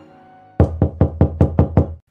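Rapid, insistent knocking on a door: about seven hard knocks at roughly four to five a second, starting about half a second in.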